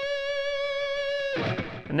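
Electric guitar tuned down a half step playing a single held note at the 15th fret on the B string, reached by a slide. The note rings steadily for about a second and a half, then is cut off.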